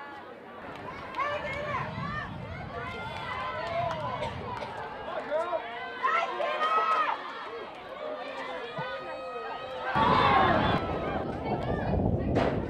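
Scattered shouts and calls from several voices across a soccer match, not close enough to make out words, with a louder swell of shouting about ten seconds in.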